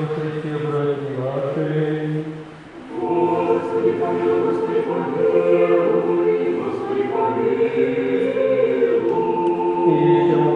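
Men's voices singing an Orthodox liturgical chant together, with a short break about two and a half seconds in before the singing resumes.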